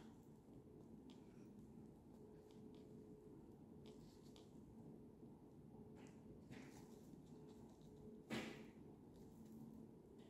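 Near silence with a faint low hum and a few faint small clicks, then one louder knock about eight seconds in: a flag in strong wind banging into the door.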